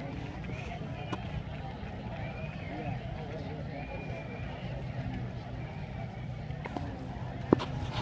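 Indistinct voices of people talking at a distance over a low steady rumble, with one sharp click near the end.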